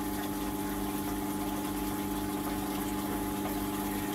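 Small aquarium return pump running with a steady, unchanging hum and circulating water.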